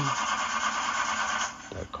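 A car engine being cranked by its starter without catching, a steady grinding rasp that stops about one and a half seconds in: the engine won't start.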